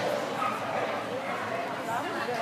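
A Vizsla barking during an agility run, with people talking in the hall.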